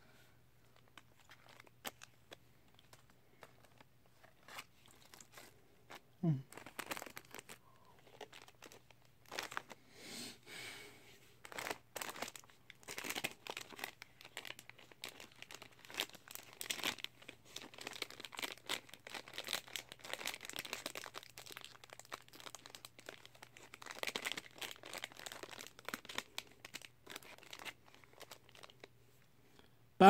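Plastic food wrappers being crinkled and torn open by hand: faint, irregular crackling that comes and goes.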